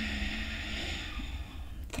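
A person's slow, hissing exhale that fades out about halfway through, then a short, sharp intake of breath near the end, over a low steady room hum.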